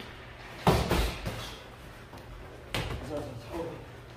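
Boxing-glove punches landing in sparring: two sharp thuds, the first just under a second in and the second about two seconds later.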